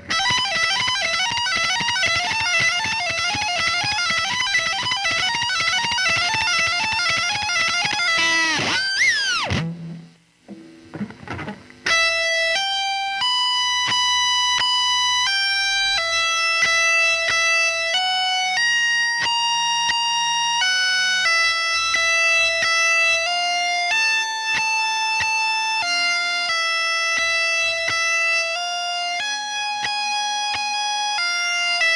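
Electric guitar played with distortion: a fast, repeating lick with wavering pitch for about nine seconds, ending in a steep downward pitch dive. After a short pause comes a series of long, held high notes, each changing after a second or so.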